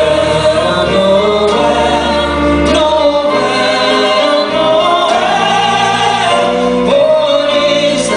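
A man and two women singing a Christmas carol together in harmony into microphones, with piano accompaniment, carried through a concert hall's sound system.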